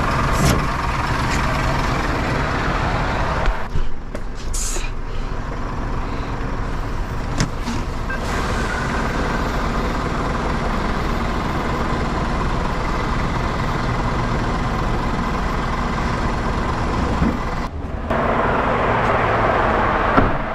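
Truck's diesel engine idling steadily close by, with a short hiss about four and a half seconds in and a few sharp clicks.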